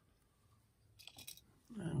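Near quiet with a few faint, short clicks and rustles about a second in, then a man's voice starts near the end.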